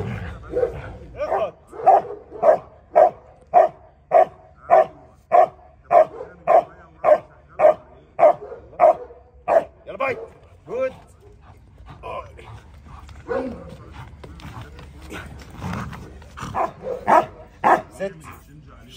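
A dog barking in a steady run of about two barks a second for some ten seconds, then dying down about eleven seconds in. This is a guard dog being worked up to bark during personal-protection training.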